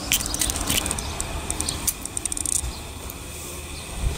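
Camera handling noise and footsteps while walking down into a boat cabin: rustling and a run of light clicks, busiest in the first half, over a low steady rumble.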